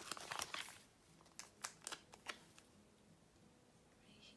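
Faint handling of a paper sticker sheet: a soft rustle, then four light ticks in quick succession, as a sticker is taken off the sheet and pressed onto a planner page.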